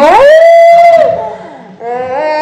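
A woman screaming in fright. One loud scream rises sharply, holds for about a second and falls away, and a second held scream starts near the end.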